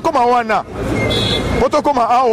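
A man's voice speaking in short phrases, with road traffic noise from a passing vehicle underneath. The traffic fills a pause of about a second between his phrases.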